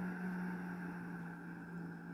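A woman humming on a long out-breath: one steady low hum that slowly fades, the humming exhale of a deep-breathing exercise meant to stimulate the vagus nerve.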